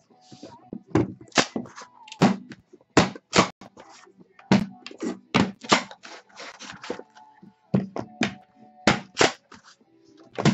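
Sealed trading-card boxes being lifted off a stack and set down hard on a desk: an irregular series of sharp knocks and thunks, about fifteen in all, some in quick pairs.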